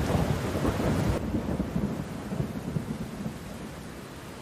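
Thunder rolling over a steady rain-like hiss. It starts suddenly, is loudest in the first second, and fades gradually.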